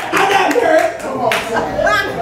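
Congregation clapping, a handful of irregular claps, with voices calling out over them.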